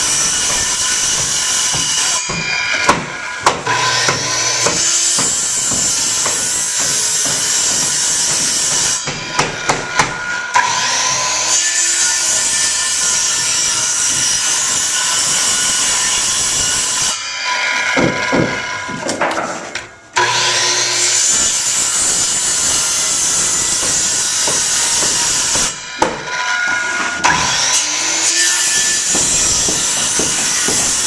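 DeWalt corded circular saw cutting the notches out of a wooden stair stringer: long steady cuts of several seconds each, with the motor winding down and spinning back up between cuts about four times.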